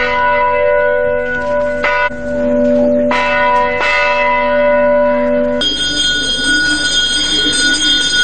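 Hindu temple bells ringing steadily with a few sharp strikes during a pooja. About two-thirds of the way in, the ringing turns higher and brighter.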